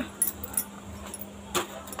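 Two light metallic clinks from kitchen handling at the stove, one just after the start and one near the end, over a faint steady hum.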